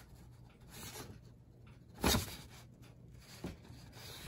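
A printed paper sheet being handled and shifted: quiet rustling, with one short louder rustle about two seconds in.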